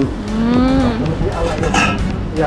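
A person's voice: one drawn-out vocal sound whose pitch sinks over the first second, with a short sharper sound near the end, over a steady low rumble.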